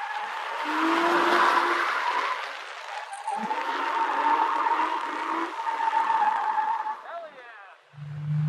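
Drift car's tyres squealing in one long, steady screech while the car slides sideways, over a rushing noise from the roof-mounted microphone. The squeal dies away about seven seconds in.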